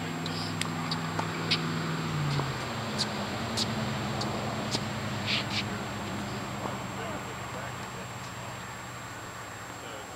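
Tennis rally on a hard court: a string of sharp pops from the ball being struck by rackets and bouncing, mostly in the first half, with a shoe scuff around the middle. Under it runs a steady low engine-like hum whose pitch shifts up about two seconds in.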